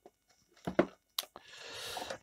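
Small parts being handled: a few sharp clicks and knocks about two-thirds of a second and a second in, then a rustle that grows over the last half second.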